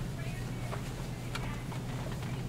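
A steady low hum with faint, indistinct voices and a couple of light clicks about a second in.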